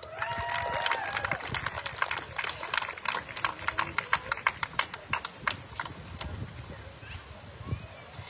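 Small audience clapping in separate, distinct claps after a graduate's name is called, with a short cheer in the first second or so; the claps thin out and fade after about six seconds.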